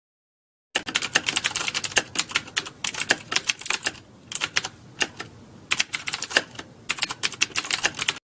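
Keyboard typing: a fast run of key clicks starting about a second in, thinning to a few scattered clicks around the middle, then a second quick run that stops near the end.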